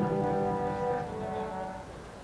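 Marching band brass section holding a sustained chord, which fades away toward the end.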